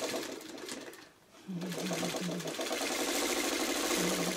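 Electric sewing machine stitching a seam through quilt fabric pieces: it starts about a second and a half in and runs steadily with an even, rapid stitch rhythm.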